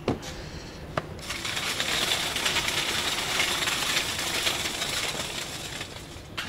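Two short clicks, then a few seconds of dense, high crackling rustle that fades out near the end.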